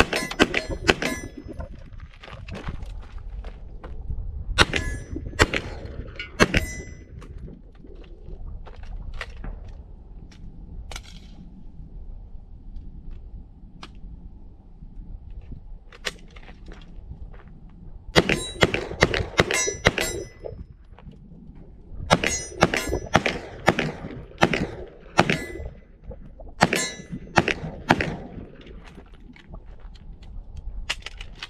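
Semi-automatic 9mm shots from an HK SP5, fired in several quick strings with pauses between. Each string is followed by the clang of hits on a steel target.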